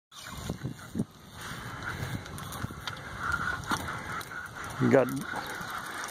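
Fishing reels under heavy load as two rods fight big fish: a steady, wavering buzz of line and drag, with a few sharp knocks in the first second.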